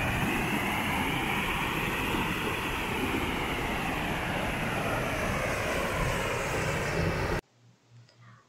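Water pouring over a low weir and churning into white foam below, a steady rushing sound that cuts off suddenly near the end.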